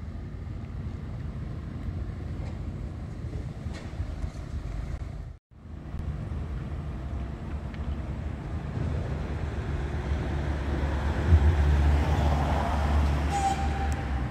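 Street traffic noise with a steady low engine rumble, which grows louder for a couple of seconds near the end as a vehicle comes close. The sound cuts out for a moment about five seconds in, and a short beep-like tone sounds near the end.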